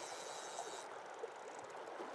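Faint, steady rush of a shallow river running over rocks.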